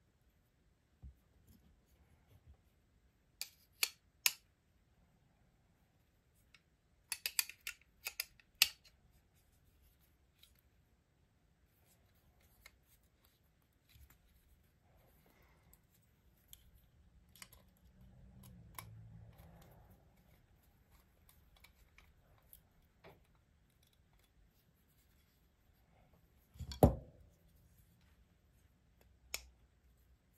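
Small sharp metallic clicks and clinks of a folding knife being handled during reassembly: steel blade, brass scales, screws and a small screwdriver. They come in scattered clusters, with the loudest, briefly ringing click near the end.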